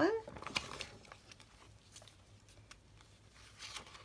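Journal pages of paper and card being handled and turned: a few soft, brief rustles and taps about half a second in and again near the end, quiet in between.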